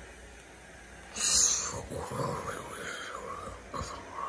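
A person's voice making a sound effect: a sudden breathy hiss about a second in, then a wavering, growl-like vocal sound for about two seconds.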